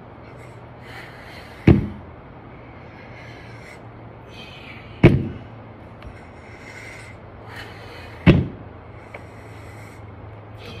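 Plate-loaded dumbbells set down hard on the ground during repetitions: a loud thud about every three seconds, three in all.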